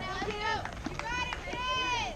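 High-pitched voices cheering in drawn-out, sing-song calls, several in a row, the longest held near the end.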